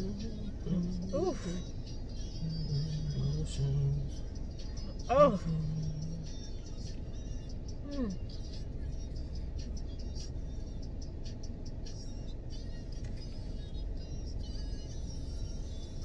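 Soft humming and a few sung vocal slides from a listener humming along to a song, over the steady low rumble of a car running with its air conditioning on. The humming comes in the first half and then stops, leaving the rumble.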